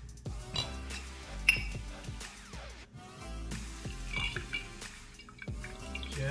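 Background music, with glass, ice and a metal shaker lid clinking as a mason-jar cocktail shaker is handled and poured; a sharp clink about a second and a half in is the loudest sound.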